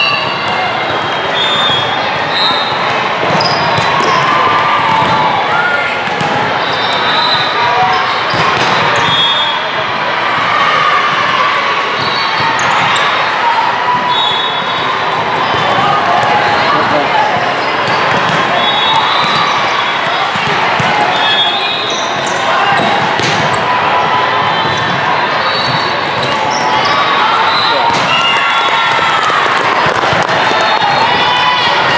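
Busy indoor volleyball court in a large echoing hall: a steady babble of players' and spectators' voices, with sneakers squeaking on the court surface and the sharp smacks of a volleyball being hit during a rally.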